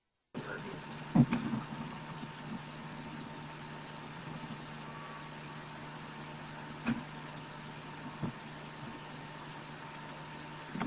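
A steady low hum with a faint high tone over hiss, broken by a few brief knocks: about a second in, and twice more near the end.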